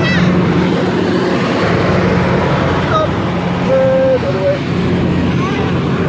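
Steady machinery drone of a spinning fairground kiddie ride running, with a noisy haze of fair background over it.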